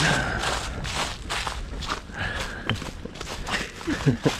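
Footsteps scuffing and crunching through dry leaf litter and snow, in a quick irregular rhythm.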